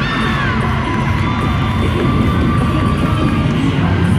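A cheerleading routine's music mix playing loud over the arena sound system, with a crowd cheering and shouting over it.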